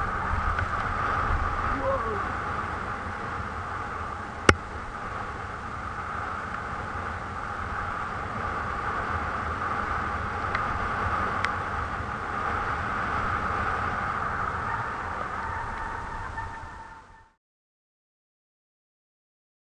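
Helmet-camera recording of a mountain bike descending fast on a dirt forest trail: steady wind rumble and trail noise. A single sharp knock comes about four and a half seconds in, and a couple of faint ticks follow later. The sound fades and cuts off shortly before the end.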